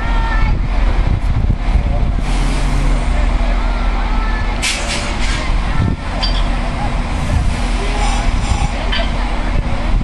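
Irish Rail 22000 class diesel multiple unit idling at the platform, its underfloor diesel engines giving a steady low rumble. About five seconds in there is a quick run of short air hisses.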